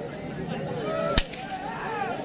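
A single sharp whip crack about a second in, as handlers drive a pair of Ongole bulls pulling a weighted sled, with men shouting calls to the bulls around it.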